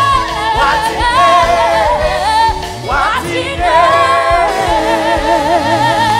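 Live gospel song: a high lead voice sings with wide vibrato over a band with bass and regular drum hits.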